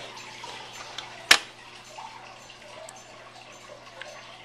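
Quiet handling sounds on a table over a low steady hum, with one sharp click about a second and a quarter in.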